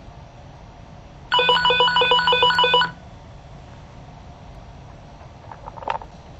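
Cobra HH425 handheld VHF/GMRS radio sounding its incoming-call alert: a rapid warbling ring of alternating tones, about eight pulses over a second and a half, starting just over a second in. Its vibrate alert hums steadily under the ring for the same span.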